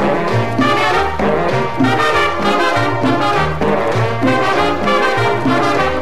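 Instrumental break of a guaracha played by a Latin dance orchestra: a brass section of trumpets and trombones over a steady, repeating bass line and percussion.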